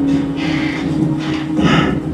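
Tense background music from a TV drama's soundtrack, holding a sustained low note, with two short noises about half a second in and near the end.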